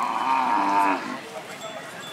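A bullock lowing once: a single loud call lasting about a second.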